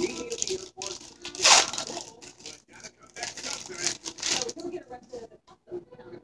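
Thin plastic packaging around a pack of craft foam sheets being torn open and crinkled by hand, with the loudest rip about one and a half seconds in and more crinkling a few seconds later.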